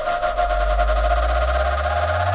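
Electronic music at a build-up: a sustained high synth tone over rapid pulsing, with a bass that rises steadily in pitch.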